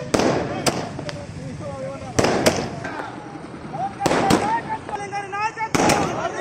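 A ground-set firecracker pack going off in a string of sharp bangs, about nine at uneven intervals, with people shouting between them.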